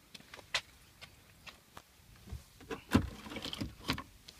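A scattering of light clicks and taps on hard interior plastic trim inside a car cabin, growing into a cluster of louder knocks in the second half, the loudest about three seconds in.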